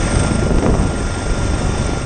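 Helicopter noise heard from inside the cabin: a loud, steady rush of rotor and engine with a thin, steady high whine over it.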